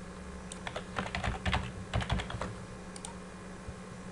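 Computer keyboard typing: a quick run of keystrokes in the first half, then a couple of stray keys about three seconds in.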